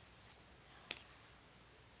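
A few small, sharp clicks from something light being handled: a faint one, then a louder click just before a second in followed by a weaker one, and a tiny tick later.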